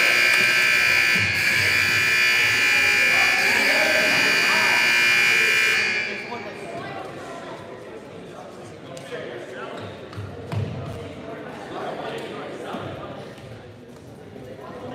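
Gym scoreboard buzzer sounding one long, loud, steady blare that cuts off suddenly about six seconds in, signalling the end of a timeout. After it, gym murmur of voices with a few faint knocks.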